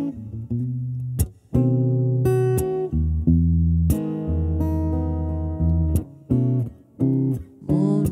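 Solo acoustic guitar playing held chords, struck with sharp strums that change chord every second or so, with a few brief gaps between them.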